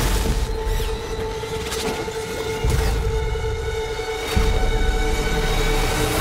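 Trailer score holding one sustained note over deep booms and sharp impacts of battle sound effects, the low rumble swelling about midway and again just past four seconds in.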